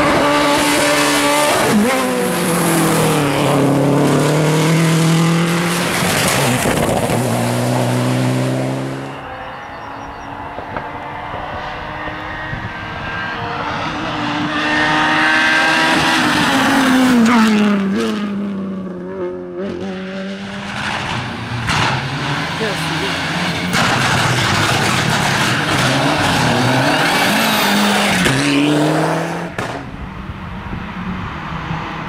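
Volkswagen Polo rally cars racing past one after another, their engines revving hard and falling back with each gear change and lift. The engine noise dips about nine seconds in, then swells again as the next car approaches and passes with a falling pitch, and another follows near the end.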